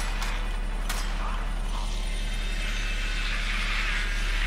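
Helicopter rotor running steadily in the episode's soundtrack, with two sharp clicks in the first second.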